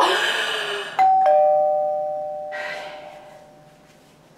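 A doorbell chimes a two-note ding-dong about a second in, a higher note then a lower one, both ringing out and fading over a couple of seconds. Before it, the tail of a woman's scream trails off.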